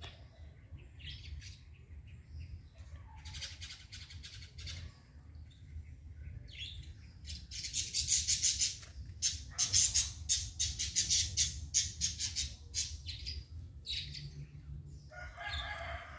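Small birds chirping in quick runs of short high chirps, busiest in the middle, over a low steady rumble.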